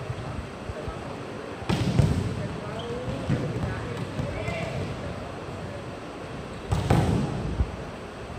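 Volleyballs being spiked and bouncing off the court during hitting practice, ringing in a large hall: two loud smacks, about two seconds in and again about a second before the end, with a few lighter ball knocks, over a murmur of voices.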